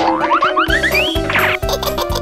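Cheerful cartoon background music with a steady bass beat, over a comic sound effect: a quick run of short notes climbing in pitch, then a brief falling glide.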